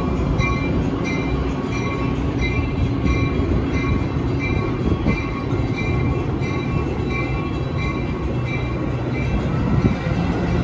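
Metra bilevel gallery passenger coaches rolling past the platform, a steady low rumble of wheels on rail. A faint, regular high-pitched beat repeats about twice a second throughout.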